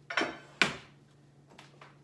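A grill pan with its press set down on a stovetop: a sharp knock about half a second in, with a short ring, then a couple of faint clicks.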